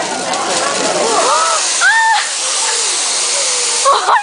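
Hibachi griddle sizzling with a loud, rising hiss as liquid hits the hot steel, building from about a second in. The griddle flares up into tall flames near the end. A few short voices call out over the hiss.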